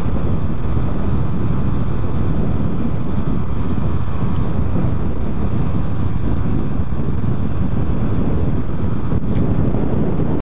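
Steady wind rumble and road noise on the camera of a Honda Pop 110i motorcycle riding at road speed. A faint click comes near the end.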